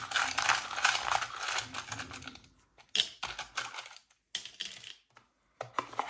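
Match-shaped prompt sticks rattling and clicking in a cardboard matchbox-style box as it is slid open and handled. There is a dense run of clicks for about two and a half seconds, then a few separate clicks.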